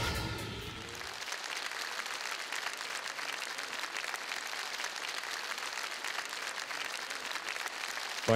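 A theatre audience applauding steadily, while the last notes of a song fade out in the first second.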